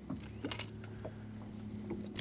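Light metallic clicks and jingles of a crankbait's treble hooks as the lure is worked free of a largemouth bass's mouth, with a cluster about half a second in, over a low steady hum.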